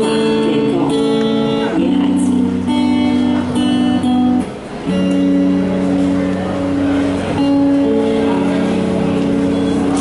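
A female singer with electric guitar accompaniment played through a small practice amplifier, performing a slow Cantopop ballad with long held notes. The sound briefly drops about four and a half seconds in.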